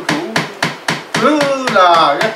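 Rhythmic wooden knocking, about four even strikes a second, keeping time for a chanted ceremonial song; the chanting voice comes back in over the beat about a second in.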